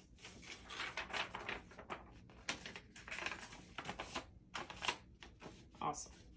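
A sheet of paper being handled and folded on a tabletop: irregular crinkles, rustles and light taps.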